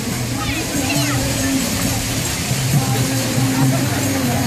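Procession kirtan: group singing in held notes that step up and down, mixed with the voices of the surrounding crowd, over a steady hiss of outdoor noise.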